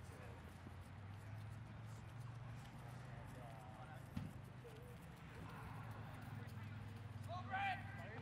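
Lacrosse game ambience: players' voices calling across the field, the loudest shout near the end, over a steady low hum, with faint scattered clicks and one sharp knock about four seconds in.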